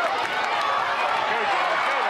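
Spectators shouting and cheering, many voices overlapping in a steady din with no single voice standing out.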